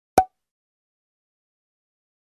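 A single short pop just after the start, then dead silence: an editor's pop sound effect over a frozen title card.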